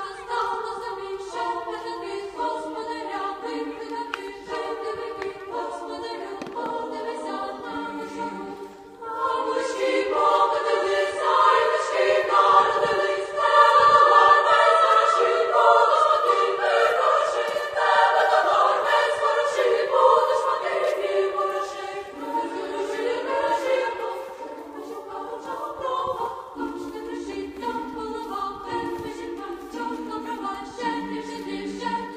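A choir singing a cappella, several voices holding and changing notes together, growing fuller and louder from about nine seconds in until about twenty seconds in, then quieter again.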